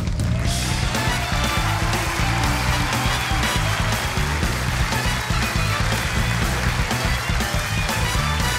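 Rock band music with a driving bass line and drums, played as the show's entrance theme. Over it, from about half a second in, a dense even wash like an audience clapping.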